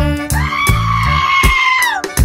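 A long, high-pitched scream, held for more than a second and dropping in pitch as it ends, over upbeat background music with bass and drums.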